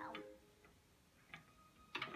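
Background music stops just after the start, leaving near silence with a few faint clicks of beads knocking on a wire bead-maze toy.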